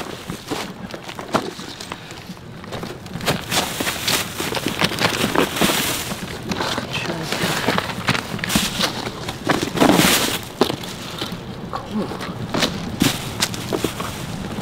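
A thin plastic bag lining a cardboard box rustles and crinkles irregularly as hands dig through the clothes packed inside.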